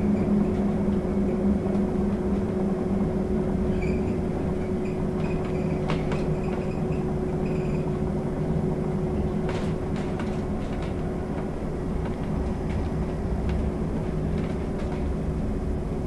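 Cabin noise inside a VDL Citea SLE-129 Electric battery bus on the move: a steady low rumble of tyres and road with a constant hum, and a few faint rattles. There is no combustion engine sound.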